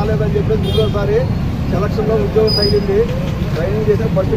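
A voice speaking over a loud, steady low rumble of traffic-like noise.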